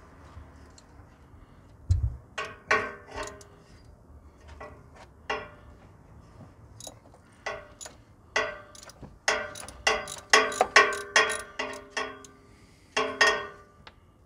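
Socket ratchet clicking as it is worked back and forth to unscrew a differential filler plug: a few scattered clicks at first, then a busy run of sharp metallic clicks in the second half. A dull knock about two seconds in.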